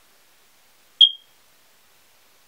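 A single short, high-pitched electronic beep about a second in, over near silence.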